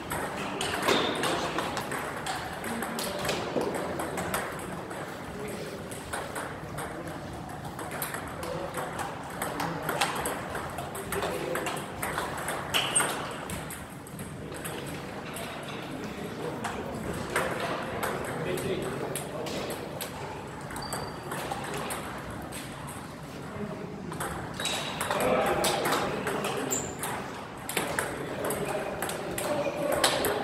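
Table tennis ball struck by paddles and bouncing on a STIGA Expert table in quick clicking rallies, with pauses between points.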